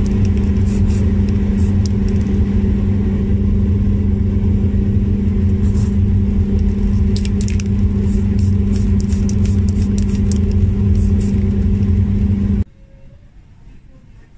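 Shoe repair finishing machine running with a loud, steady electric-motor hum, broken by short hissy bursts at intervals. The sound cuts off suddenly near the end.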